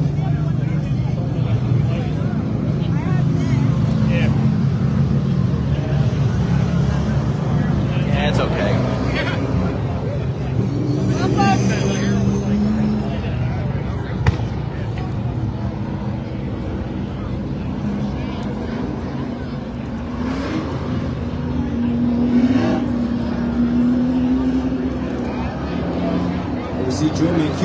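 Limited late model race-car engines droning steadily at low speed under caution, with people talking nearby and a single sharp tap about fourteen seconds in.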